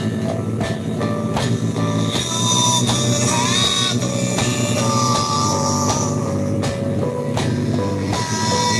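A rock song playing, with long sustained high notes that bend in pitch, like a distorted lead guitar, over the band. Drumsticks strike the pads and cymbals of an electronic drum kit in time with it.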